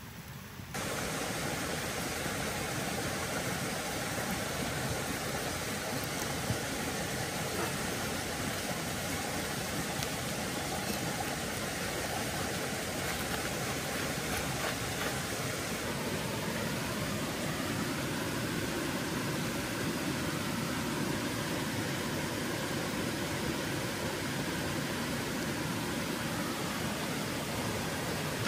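Steady rushing of a stream, an even noise that comes in abruptly about a second in and holds at one level.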